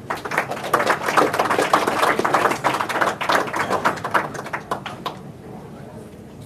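A small audience applauding, a dense patter of hand claps that thins out and dies away about five seconds in.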